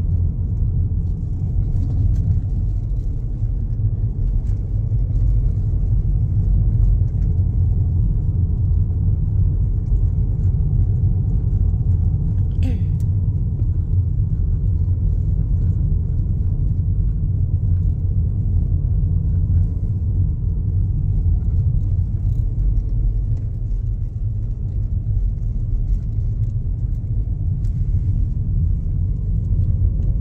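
Steady low rumble of a car driving, heard from inside the cabin: engine and tyre noise on the road.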